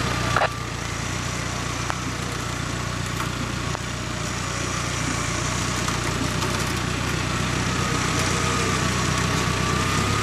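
Land Rover Discovery engine running under load as it pulls out of a mud hole on its winch, its rear wheels spinning in the mud, and gradually getting louder. A faint thin whine sits above the engine.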